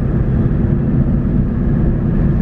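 Steady low rumble of a car driving along a road, heard from inside the cabin: engine and tyre noise.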